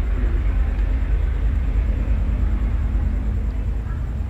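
Steady low rumble of background noise, with a faint steady hum in the middle stretch.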